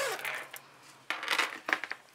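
Fabric rustling and a few small hard clicks and clinks as a zippered fabric clutch and its metal zipper pulls are handled and set down on a cutting mat.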